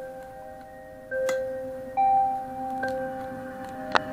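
Slow melody of chiming, bell-like notes, a new note about every second, each ringing on, played through a small homemade Bluetooth speaker. A sharp click near the end.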